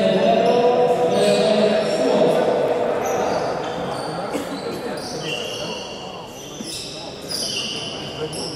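Futsal play in a large, echoing sports hall: players' voices carry loudest over the first few seconds, then a run of short, high squeaks from shoes on the wooden court.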